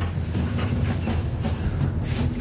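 A steady low rumble with a fast rattling clatter over it.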